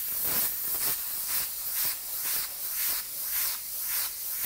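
Airbrush spraying paint onto a t-shirt in short, repeated pulses of hiss, about three a second.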